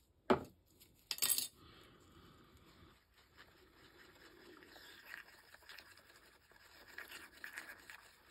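A stirring rod scraping round a resin mixing cup as fine glitter is stirred into epoxy resin. A faint, steady scraping, with a sharper clink about a second in.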